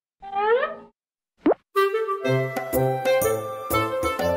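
Two short cartoon sound effects: a pitched sound rising in pitch, then a quick upward sweep. They are followed, just under two seconds in, by the start of an upbeat children's song with bass, chords and a steady beat.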